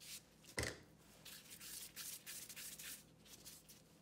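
A plastic dough scraper cuts through a log of red bean paste onto a silicone mat with one soft thump about half a second in. This is followed by a run of faint rustling from gloved hands and the scraper rubbing as the pieces are handled.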